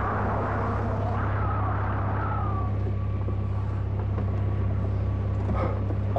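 A steady engine drone, even and unchanging, like that heard inside a travelling vehicle's cabin. Over it, a pitched sound wavers and glides for the first couple of seconds, then settles into a faint steady tone.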